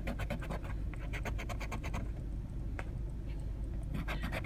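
A coin scraping the coating off a scratch-off lottery ticket in quick, repeated strokes, which thin out to an odd stroke after about two seconds.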